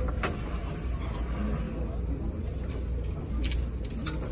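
Steady low rumble of a car ferry's engines running underway, with serving tongs clicking against a buffet dish twice, once just after the start and once near the end.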